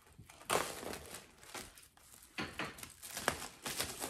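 Clear plastic packaging crinkling and rustling in irregular bursts as it is handled.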